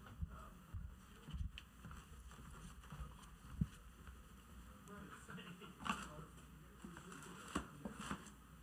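Quiet room noise: a steady low hum with a few scattered knocks and bumps, the sharpest about halfway through and near the end.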